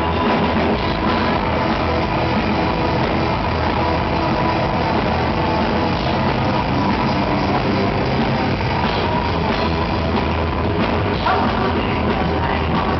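Live rock band playing a song at full volume: electric guitars, bass guitar and drum kit.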